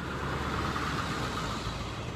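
A pickup truck driving past on the road, its tyre and engine noise swelling to a peak about a second in and then fading.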